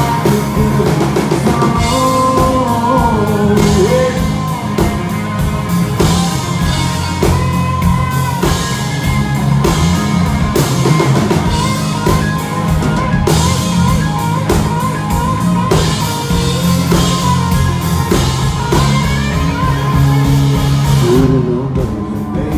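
A rock band playing: electric guitar over a drum kit and bass, with a steady beat throughout.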